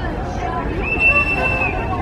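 Babble of several people talking at once, indistinct, over a low steady vehicle hum. A high held tone sounds for most of a second about halfway through.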